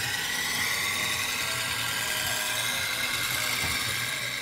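A steel knife blade held against a spinning grinding wheel, giving a steady grinding hiss with a faint high whine.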